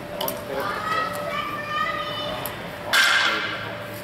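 Distant voices echoing in a large hall, then a short, sharp, loud noise about three seconds in.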